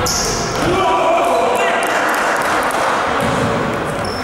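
Sounds of a basketball game in a gym hall: players calling out and shouting to each other, with a shoe squeak at the start and the ball bouncing on the court.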